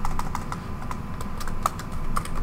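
Computer keyboard being typed on: a run of short, irregular key clicks, several a second, as a line of code is entered and corrected.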